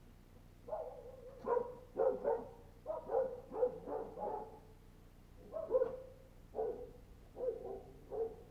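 Dog barking repeatedly, about a dozen short barks in bouts, starting just under a second in and pausing briefly around the middle.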